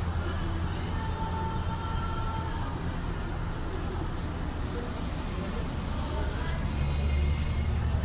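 Indoor room noise: a steady low rumble with faint voices in the background.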